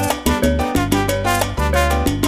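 Instrumental salsa music with no singing: a steady percussion beat over a bass line and chords.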